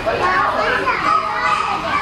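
Several young children's voices chattering and calling out over one another, high-pitched, with no single clear speaker.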